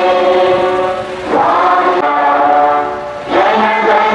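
A large crowd singing together in unison, long held notes with two short breaks between phrases.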